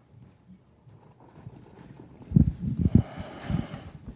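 A quick run of dull thumps and knocks starting about two seconds in, with a little rustling: handling noise from a microphone being passed and gripped.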